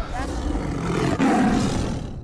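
Tiger roar sound effect: one long, rough roar that swells in the second second and fades out just after.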